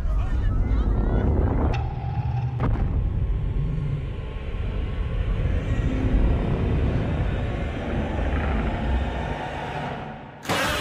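Film sound mix of a giant-monster attack: a deep, continuous rumble with two sharp crashes at about two and three seconds in, over voices in the crowd and a music score underneath.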